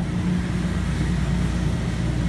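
Steady low machine hum, even and unbroken.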